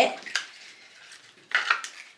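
Light clinks and handling of a drinking glass of water: a sharp click about a third of a second in, then a louder, brief clatter about a second and a half in.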